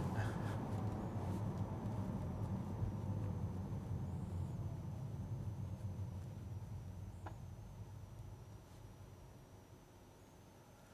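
Tyre and road rumble inside a Tesla Model 3's cabin, fading steadily as the car slows almost to a stop.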